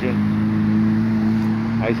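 Street traffic with cars driving slowly past close by, over a steady low hum.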